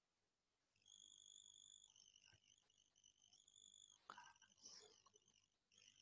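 Near silence: faint room tone with a thin, steady high-pitched tone and a couple of faint ticks.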